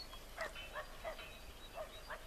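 Faint outdoor ambience with a few short distant animal calls and thin bird chirps scattered through it.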